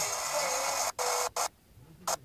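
Weak broadcast sound from a distant TV station played through a portable TV set: faint programme sound buried in loud hiss. It breaks up with two short cut-outs about a second in, then drops out almost entirely for the last half second as the signal fades.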